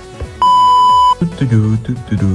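A single loud, steady electronic beep of about three-quarters of a second, a censor bleep tone, followed by a character voice.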